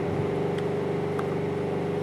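A steady machine hum at one fixed pitch, running without change.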